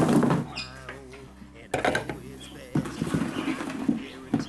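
Knocks and clatter of a large bowl being handled and set down onto a plastic kitchen scale, with sharp knocks near the start, just before the middle and again a second later.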